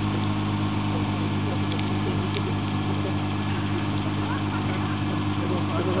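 Nissan GT-R's twin-turbo V6 idling steadily while the car stands still.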